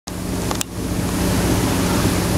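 Water rushing along a moving sailboat's hull, a steady hiss, over a low steady drone. A couple of brief clicks about half a second in.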